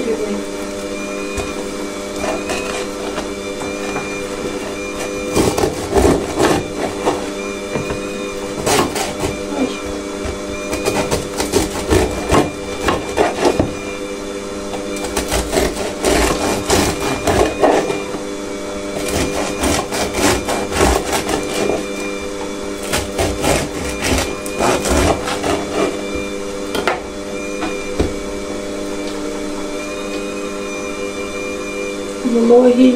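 Serrated bread knife sawing through a crusty sourdough loaf in several bouts of crackly strokes, with the crust crunching. Under it runs the steady hum of a home electric mixer motor kneading bread dough.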